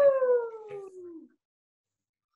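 A single high voice gives one long vocal glide that slides steadily down in pitch, lasting about a second and a half and stopping abruptly.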